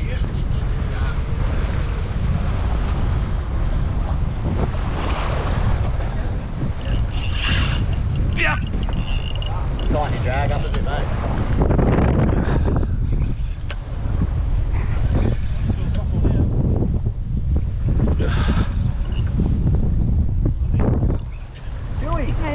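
Wind buffeting a camera microphone on a boat at sea, a steady low rumble with the wash of waves against the hull.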